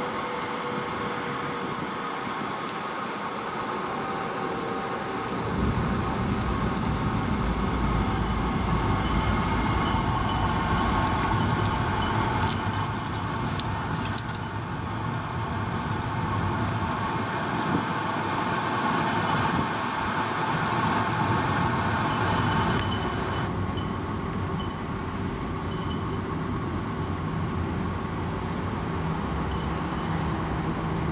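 Steady rushing hum of a Holle Bolle Gijs vacuum waste bin, air being drawn through its open mouth. A deeper rumble joins about five seconds in.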